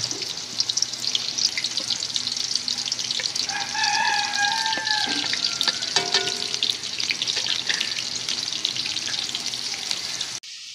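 Chopped onions frying in hot cooking oil in a karahi: a steady sizzle with many small crackling pops.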